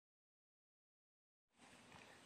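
Near silence: complete digital silence, then very faint recording hiss from about one and a half seconds in.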